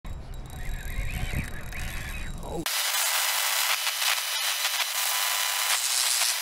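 Wind buffeting the microphone, with a few faint squeaks over it. About two and a half seconds in it cuts off suddenly to a louder, steady static-like hiss with no low end, the sound effect of a logo intro.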